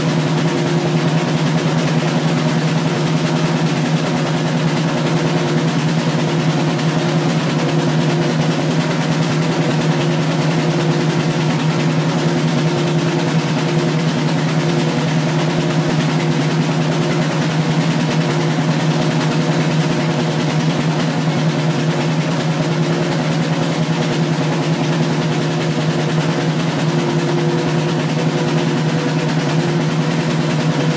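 A continuous, unbroken drum roll played with sticks, loud and even, over a steady low ringing drone.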